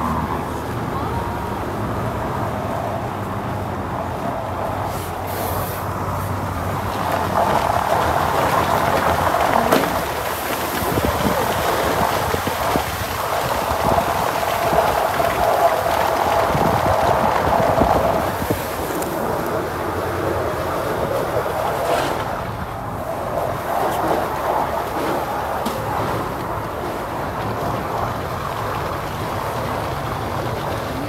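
A Land Rover Defender's tyres rolling over snow and slush, a steady rushing road noise that grows louder for about ten seconds in the middle.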